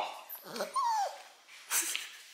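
Small curly-coated dog whining in an excited greeting, one high whine falling in pitch about a second in, with a short noisy burst near the end.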